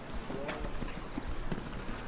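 Faint sound from a futsal pitch: a few light taps of feet and ball on artificial turf, over a low background hum and distant voices.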